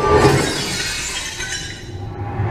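Glass-shattering sound effect in the performance music track: a sudden crash with a glittering tail that fades over about a second and a half, while the music's beat drops back.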